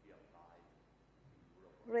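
Faint, distant speech from someone off-microphone in a hall. A much louder, close voice starts right at the end.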